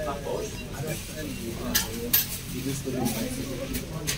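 Indistinct background voices with three sharp clinks of dishes or cutlery, two around the middle and one near the end.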